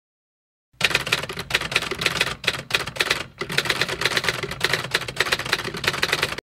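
Typewriter sound effect: a fast run of key clacks, several a second, starting just under a second in, laid over text being typed out on screen.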